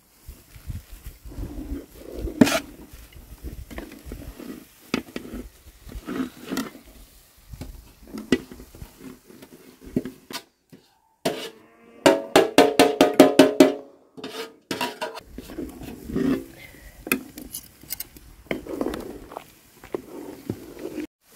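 Metal spoon scraping and knocking against an aluminium bowl and pot as chopped herbs are scraped out into the soup and stirred: scattered clinks and scrapes, with a quick run of ringing metal knocks, several a second, about halfway through.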